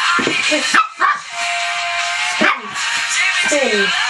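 Small dog giving a few short barks and yips, the last one falling in pitch, over background music with a long held note.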